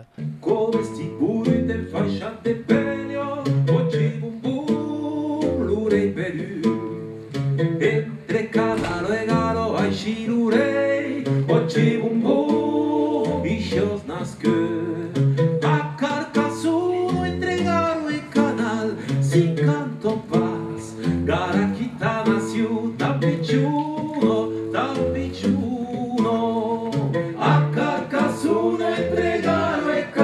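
A traditional folk band playing live: singing over a plucked oud, with accordion, fiddle and drums keeping a steady beat.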